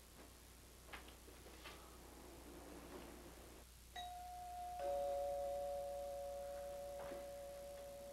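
Two-tone doorbell chime: a higher ding about four seconds in, then a lower dong, both ringing on and slowly fading. Before it come a couple of light knocks.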